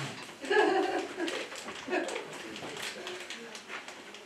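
An elderly man's voice making short wordless vocal sounds. The loudest comes about half a second in, and a shorter one follows around two seconds.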